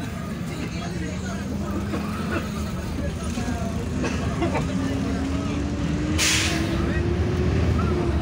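City bus engine running under way, heard from inside the cabin, its pitch rising steadily as the bus picks up speed, with a short burst of hissing air about six seconds in.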